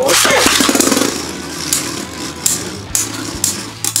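Two Beyblade Burst spinning tops launched together into a plastic stadium: a loud whirring rip from the launchers at the start, then the tops spinning and scraping against each other and the stadium floor, with scattered sharp clacks as they knock together.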